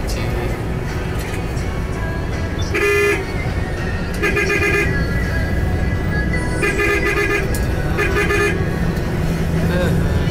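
A vehicle horn honking four times, short toots spread through the middle, over the steady low rumble of engine and road noise heard from inside a moving vehicle.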